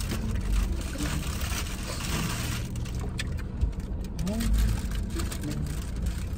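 Steady low rumble and hiss of a car's interior, with low voices and brief murmurs over it.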